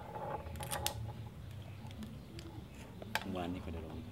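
Sharp clicks and knocks of a container being handled on a table, the loudest about a second in and again after three seconds, with a short stretch of a voice near the end.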